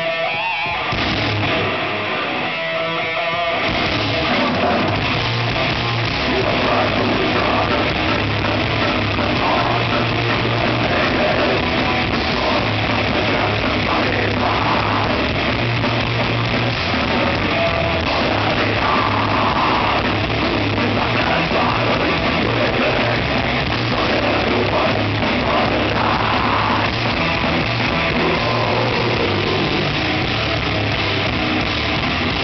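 A death metal band playing live, with distorted electric guitars, bass and drums, loud and dense. The low end drops out briefly twice in the first few seconds, then the full band plays on steadily.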